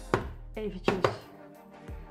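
A couple of sharp knocks and light scraping of a plastic spatula against a plastic bowl and a cream jar as thick whipped body cream is spooned into the jar, the loudest knock about a second in.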